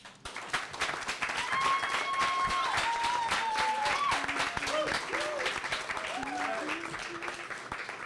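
Audience applause, starting about half a second in, with drawn-out whoops and cheers over the clapping in the first half and lower shouts later.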